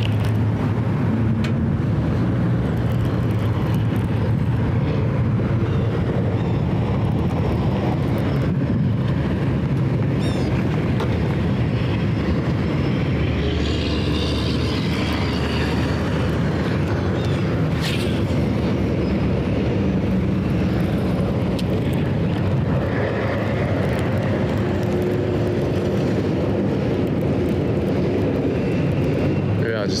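Wind buffeting the camera microphone: a steady, loud low rumble.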